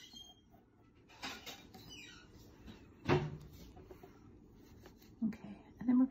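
Pencil scratching on drawing paper in short strokes, with a few faint squeaks about two seconds in and a sharp knock about three seconds in.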